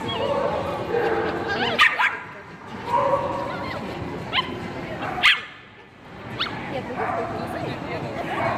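A dog yipping in short, sharp barks, four times, over the murmur of voices in a large hall.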